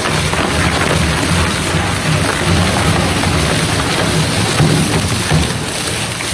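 H-50 hybrid dual-shaft shredder, a 50-horsepower machine, tearing up a roll of sandpaper trim: a continuous crackling, tearing noise over a low rumble from the cutting shafts.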